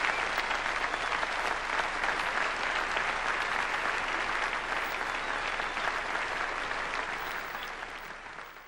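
Audience applauding, a dense steady clapping that grows gradually quieter over the last couple of seconds.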